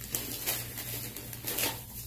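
Shopping bags rustling and crinkling in short, irregular bursts as a pet digs and searches through them.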